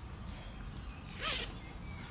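A single short zip rasp about a second in, from the zip of a carp weigh sling being pulled open.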